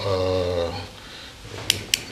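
A man's voice trails off in one drawn-out vowel, then after a short pause two short sharp clicks come about a quarter second apart near the end.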